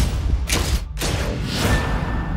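Trailer score: a low drone under three loud swelling hits, one at the start, one about half a second in, and a longer one that builds and fades in the second half.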